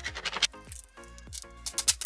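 Background music with a steady electronic beat: repeated deep bass drum hits and crisp high percussion ticks several times a second.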